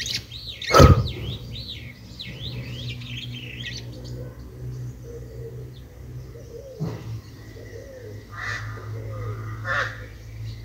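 A small bird singing a quick run of warbling chirps that stops about four seconds in, over a steady low hum. A sharp knock about a second in is the loudest sound.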